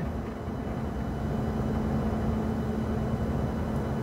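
Steady engine and road noise inside a pickup truck's cab cruising at highway speed, with a faint low hum running under it.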